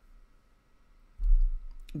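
Quiet room tone with a faint steady hum; a little past a second in, a sudden low thump, then a few faint clicks just before speech resumes.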